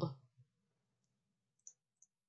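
A single short computer mouse click about three-quarters of the way through, with a fainter tick before it, against near silence.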